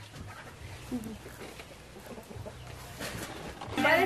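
Quiet outdoor yard ambience: a low steady hum with faint scattered sounds and one short call about a second in. Voices start up near the end.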